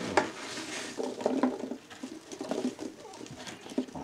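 Irregular rustling, light taps and a few sharper knocks as plastic tubs and packing are handled.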